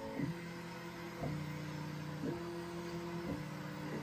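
Bambu Lab X1 Carbon 3D printer running a print at Standard speed, its stepper motors whining in several steady tones that jump to new pitches about once a second as the print-head moves change. The printer has no silent stepper drivers, so the motors audibly sing the frequencies of their moves.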